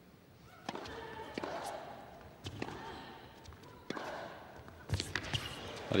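Tennis ball bouncing on an indoor hard court and struck by rackets: a series of sharp knocks roughly a second apart, with a quicker cluster near the end.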